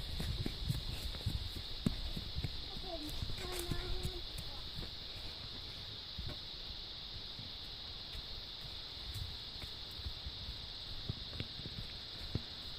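Footsteps of a person walking across grass and onto gravel, with irregular thumps and rumble from a hand-held phone microphone; a faint voice calls out briefly about three to four seconds in.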